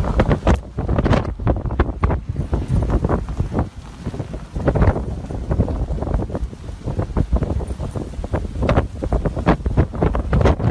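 Blizzard wind gusting hard against the microphone: a loud, uneven rumble of wind buffeting with frequent sudden surges.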